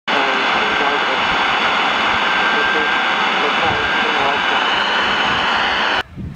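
National Panasonic GX3 transistor radio, converted to receive the 160-metre amateur band, giving a loud, steady hiss of band noise with a weak AM voice signal faintly heard under it.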